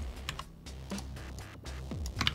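Computer keyboard keystrokes, a few scattered clicks, over steady background music.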